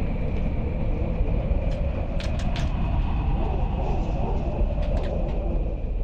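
A steady, loud low rumble like a heavy vehicle or machine, with a faint high whine held over it; a quick cluster of sharp clicks comes about two seconds in and a couple more near five seconds.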